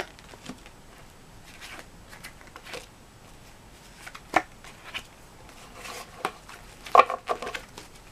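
Tarot cards being dealt out and laid down one by one: scattered soft taps and card rustles, with sharper taps about four seconds in and near the end.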